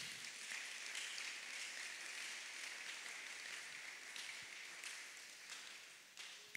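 Congregation applauding as an offering of applause to the Lord, heard faintly and thinning out toward the end.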